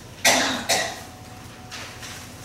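A woman coughs twice, two short sharp coughs about half a second apart, the first the louder.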